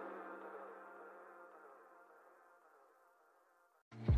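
A song's last held notes fading out over about the first two seconds, then near silence.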